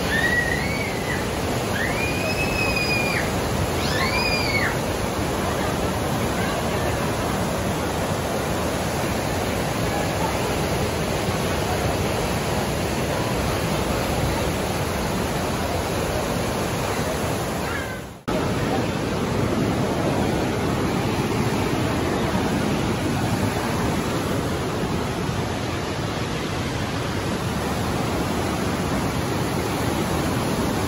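Class 6 whitewater rapids of the Niagara River rushing, a loud, steady noise of water. A few short high calls rise and fall in the first few seconds, and the sound dips out for a moment about two-thirds of the way through.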